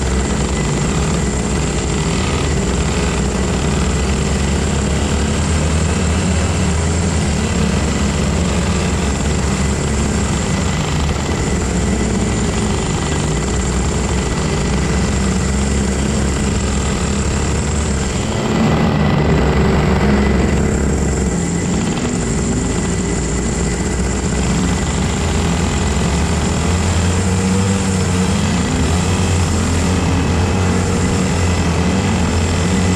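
Engines of a pack of rental go-karts running hard through corners, heard from onboard one kart. Their pitch wavers up and down as the drivers lift off and accelerate, and the sound swells slightly about two-thirds of the way in.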